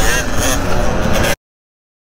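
Riding noise from a dirt bike on the move: wind rushing over the microphone with the engine running under it, and a voice briefly at the start. About a second and a half in, the sound cuts off abruptly to dead silence.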